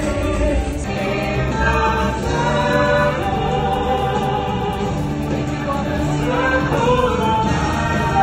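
Stage-show music with a choir singing long, held notes.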